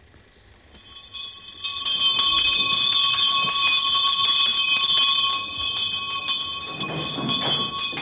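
A bell ringing continuously with a fast, rattling strike, like an electric wake-up bell, coming in about a second and a half in.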